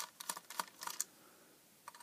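Faint, sharp clicks and ticks of a small screwdriver tip prying at a circuit board inside a plastic plug-in housing, breaking the seals that hold it in. There are about six quick clicks in the first second, a pause, and one more click near the end.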